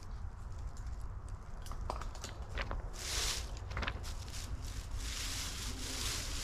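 Outdoor ambience: a steady low rumble, as of wind on the microphone, with scattered clicks and rustles and brief hissing swells about three and five seconds in.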